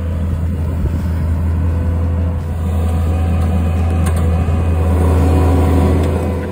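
Compact track loader's diesel engine running steadily under load as the machine pushes and grades dirt with its blade, growing gradually louder as it comes close.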